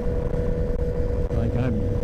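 Sportbike's inline-four engine running at a steady cruising speed on the highway, one constant tone with no rise or fall, under heavy wind rumble on the helmet microphone.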